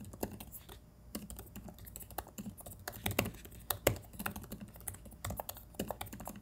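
Typing on the Google Pixelbook Go's Hush Keys laptop keyboard, keys built to make little sound: a quiet, irregular run of soft key clicks, with a short lull just before a second in.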